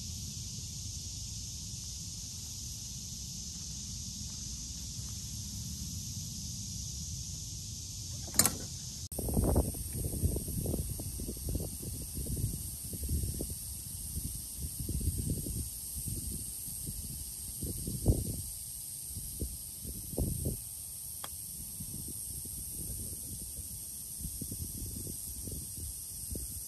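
Steady outdoor background of low rumble and hiss, with a sharp click about eight seconds in. From about nine seconds, irregular low thuds and rumbles come and go for some twelve seconds.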